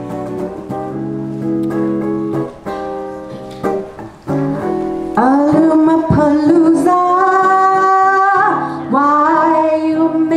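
A live song with an electric guitar and a singer. The guitar strums chords for about the first five seconds, then the voice comes in louder with long, held notes that slide in pitch.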